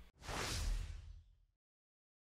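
A single whoosh transition sound effect, about a second long, that sets in just after the start and fades away.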